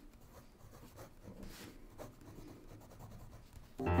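Pen scratching across paper in short, irregular strokes, faint. Near the end a piano comes in loudly with sustained notes.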